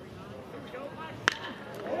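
Baseball bat striking a pitched ball: a single sharp crack about a second and a quarter in, solid contact that sends the ball deep to left center for a home run. Faint ballpark ambience underneath.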